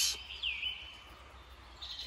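A bird calling in a forest: two short swooping whistled notes, each falling and then levelling off, in the first half-second or so. After them only faint background sound remains.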